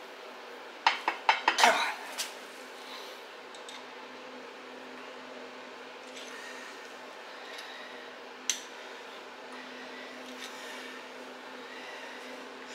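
A quick run of metal clinks and knocks about a second in, then one sharp click later on. They come as a limited-slip differential carrier, its bearing sitting crooked on the race, is worked down into a GM 8.2 10-bolt axle housing. The garage heater hums steadily underneath.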